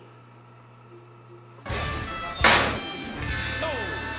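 A faint steady hum, then a title-card sound effect starting about one and a half seconds in: music with a loud whoosh and hit under a second later, running on to a falling tone and a spoken "Sold" near the end.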